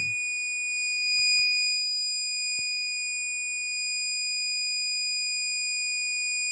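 Buzzer of a homemade water level indicator alarm sounding one continuous high-pitched tone, signalling that the water has reached the 100% level. A few faint ticks are heard in the first few seconds.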